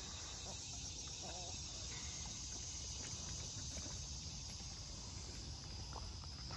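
Faint outdoor ambience: a steady, high-pitched insect drone with a faint low rumble beneath it.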